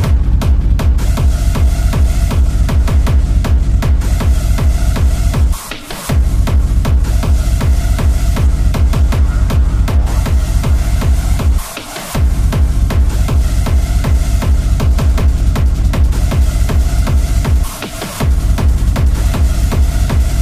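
Hard techno DJ set: a fast, heavy four-on-the-floor kick drum comes back in after a break, with a droning synth line over it. The kick cuts out briefly three times, about every six seconds.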